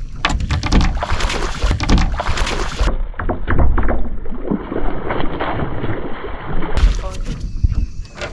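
Wind buffeting the microphone and a string of knocks and thumps on a bass boat's deck as a hooked bass is fought at the boat's side, with splashing as the fish leaps at the surface about four seconds in.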